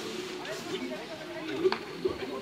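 Players' voices calling across a football pitch at a distance, with one sharp knock about three-quarters of the way through.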